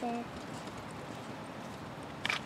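Hoofbeats of a single horse trotting on turf while drawing a four-wheeled driving carriage. A short spoken word overlaps the first moment.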